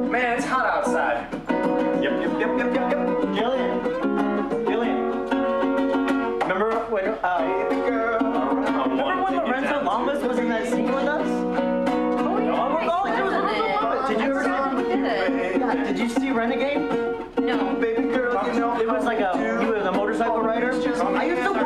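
Ukulele strummed with a man singing along, a solo acoustic rendition of a song.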